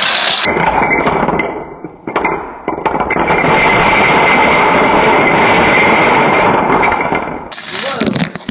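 Plastic dominoes clattering on a wooden floor as a toppling line runs into a tall domino wall and brings it down. A sharp rattle at the start eases off about two seconds in, then swells into a long clatter as the wall collapses, fading near the end.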